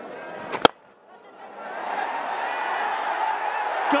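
A cricket bat striking the ball with one sharp crack about two-thirds of a second in. After a short lull, the stadium crowd's noise swells steadily as the lofted shot carries toward a fielder.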